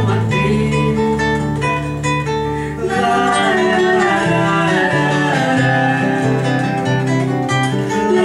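Acoustic guitars (violões) playing a song together, with a voice singing over them for part of it.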